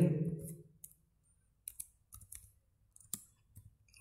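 Keystrokes on a computer keyboard: a handful of separate sharp clicks, spaced unevenly, as a short terminal command is typed.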